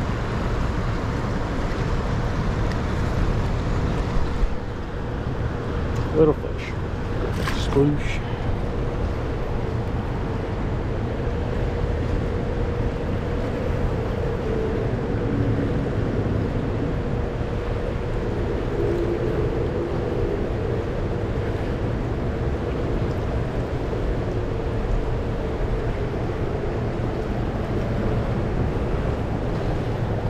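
Steady low rumble of wind and moving river water, with a few brief knocks or clicks about six to eight seconds in.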